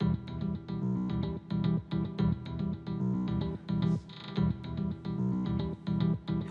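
Background score music: a run of quick, evenly paced plucked notes over a strong low bass line, starting suddenly at the beginning.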